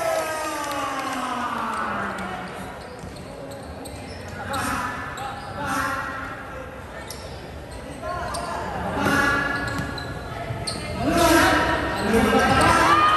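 Basketball game in a gym hall: the ball bouncing on the court floor, with players and spectators shouting in bursts that are loudest near the end.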